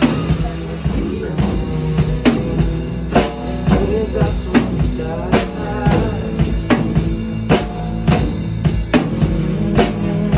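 Acoustic drum kit played along to a recorded pop song: bass drum, snare and cymbals keep a steady beat, with sharp hits a little more than once a second. The song's instrumental backing carries on underneath, without vocals.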